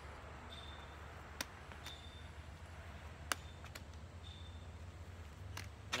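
Faint outdoor ambience with a steady low rumble, broken by two sharp clicks about two seconds apart and a few short, faint high peeps.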